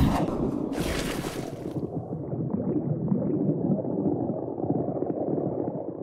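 Sound-designed logo intro: two whooshes in the first two seconds over a low, rumbling underwater bubbling that fades out at the end.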